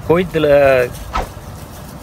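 A man talking in Tamil for about a second, then a quieter pause with only a faint steady low hum and a single light click.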